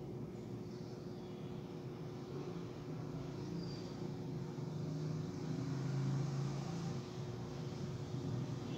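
Steady low background rumble with a faint continuous hum, swelling slightly a little past the middle.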